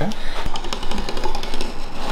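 Snap-off utility knife blade drawn along the edge of an MDF template, slicing through overlapping double-stick tape with a steady scraping, and a small tick about half a second in.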